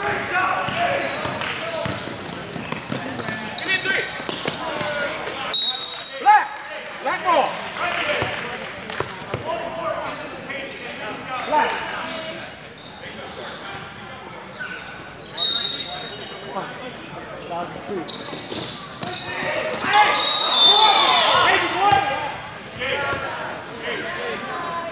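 Basketball game in a large gym: a ball bouncing on the hardwood under a steady mix of player and spectator voices. Two short, shrill referee's whistle blasts come about five and fifteen seconds in. Near the end the voices get louder.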